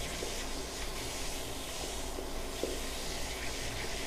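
Stainless steel push-button drinking fountain running, a steady hiss of water, with one faint click about two and a half seconds in.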